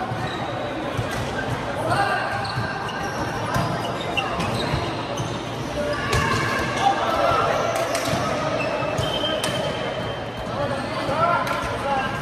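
A light volleyball rally echoing in a large sports hall: repeated slaps of hands and arms on the soft plastic ball, with players shouting calls to each other several times, and short high squeaks off the court floor.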